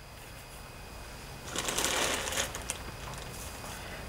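A brief rustling handling noise, starting about a second and a half in and lasting about a second, over a faint steady low hum.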